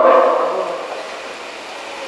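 A pause in a man's amplified speech. The tail of his last words fades away over about a second, leaving a steady background hiss.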